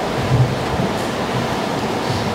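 Steady rushing background noise in a large church room, with no distinct sound events.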